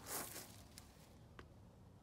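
A brief rustle of shrub leaves and a slipper stepping onto wood-chip mulch, then two small clicks.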